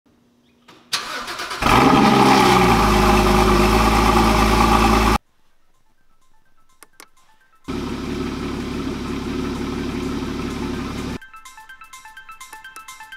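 Porsche GT4 flat-six engine starting: a brief starter crank about a second in, then it catches and runs loud and steady until it cuts off suddenly. After a quiet gap with a couple of clicks, the engine is heard running again more quietly for a few seconds before music takes over near the end.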